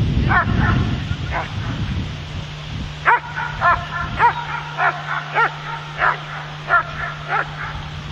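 A dog barking: a few barks in the first second and a half, then a regular run of about eight barks, roughly one every half second or so, from about three seconds in.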